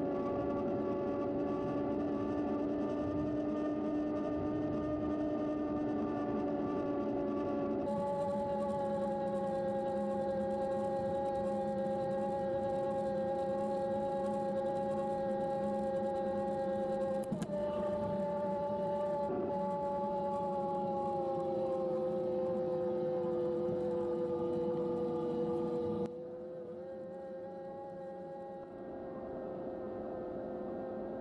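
CYC Photon mid-drive e-bike motor whining steadily under light throttle, a pitched whine with several overtones over a low rumble of riding noise. The pitch drifts slowly lower as the motor speed eases off. The sound changes abruptly a few times, and it is quieter for the last few seconds.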